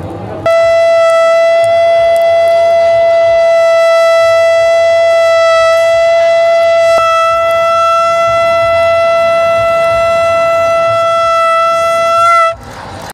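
A single long, loud blown note on a horn, held at one steady pitch for about twelve seconds and rising slightly just as it cuts off.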